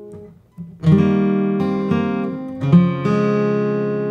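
Fylde Falstaff steel-string acoustic guitar played fingerstyle: after a brief lull, a handful of single notes are plucked one after another from about a second in and ring on over each other.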